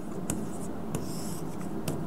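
Pen writing on an interactive whiteboard screen: a few light taps, and a short scratchy stroke about a second in.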